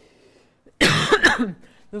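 A loud cough about a second in, close to the microphone.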